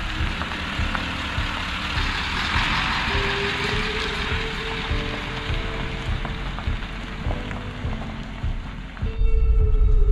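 Background music with slow held notes over a Ford Super Duty pickup driving on gravel. Near the end a louder, deeper rumble of the truck, heard from inside the cab, takes over.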